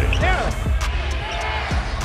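A basketball bouncing on a hardwood court in broadcast game audio, with background music underneath and a brief stretch of voice early on.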